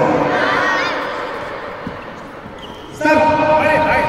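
A group of children shouting and cheering together in an echoing sports hall. The shouting is loud at first, dies down through the middle and rises sharply again about three seconds in.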